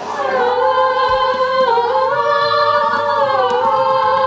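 Unaccompanied singing: one long held note that dips in pitch and comes back up twice.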